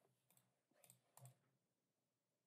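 Near silence, with a few faint short clicks a little before and after the middle.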